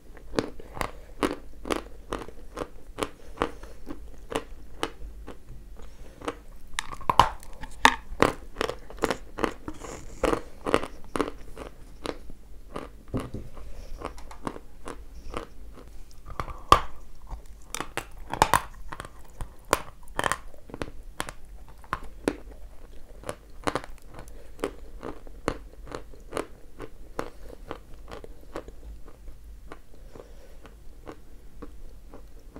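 A person biting and chewing pieces of 'ryzhik' edible clay, with dense crisp crunches several times a second and a few louder bites about a quarter and a half of the way through.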